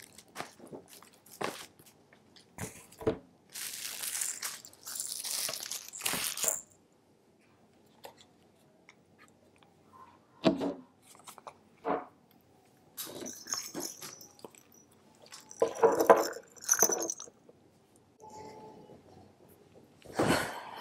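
Baby toys and books being picked up and gathered by hand: scattered knocks and clicks of plastic toys with several bursts of crinkly rustling.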